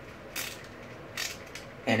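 Faint, brief scuffs and small clicks from handling a skateboard and its truck hardware, twice in the middle, with a spoken word at the very end.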